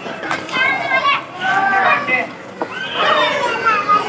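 Children's voices calling and chattering, with several voices overlapping.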